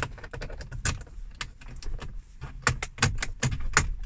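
Car key jiggling in the glove box lock of a BMW E46 and the plastic latch handle being tugged: a string of irregular clicks and rattles, busier near the end. The glove box is stuck and won't open.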